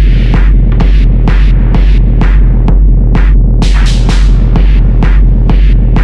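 Techno track: a heavy, steady low bass throb under a dense synth layer, with short percussive ticks recurring through it and a swell of hiss about four seconds in.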